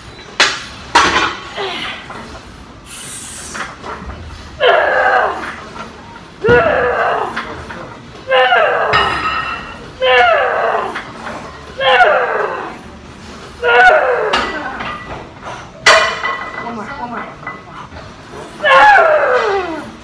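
A woman grunting loudly with each rep of a heavy leg press, about eight forceful grunts, each falling in pitch, one every couple of seconds. Near the start the metal weight plates clank a couple of times.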